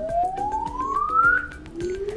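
Samsung Galaxy Note10+ earpiece receiver playing its test-mode tone: a single pure tone gliding steadily up in pitch, breaking off about one and a half seconds in and starting again from low. The clean sweep shows the receiver working correctly.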